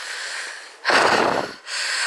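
A hiker breathing hard on a steep uphill climb: two breaths in a row, the second louder.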